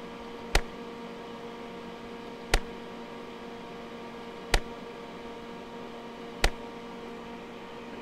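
Safe and Sound Pro RF meter's audio output clicking four times, about two seconds apart, once for each single 5-microsecond RF pulse it detects, over a steady hum.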